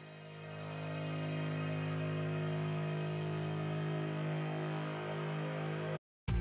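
Slow ambient background music, a sustained chord that fades in over the first second and then holds. It cuts off suddenly at the end.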